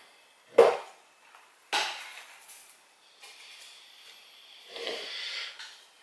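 Handling knocks as a terracotta bonsai pot is turned on the work surface: a sharp knock just over half a second in, a second one about a second later, then faint scraping.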